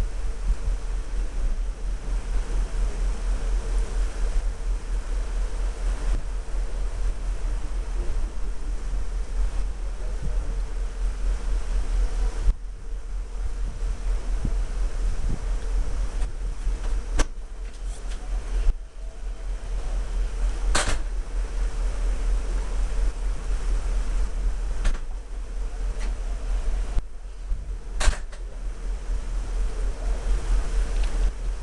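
Steady low rumble of wind buffeting the microphone on a ship's open deck, under a faint steady hum. A few sharp clicks come in the second half.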